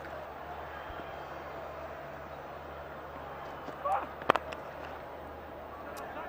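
A cricket bat strikes the ball once with a sharp crack about four seconds in, over the steady hum of a stadium. A short shout comes just before it.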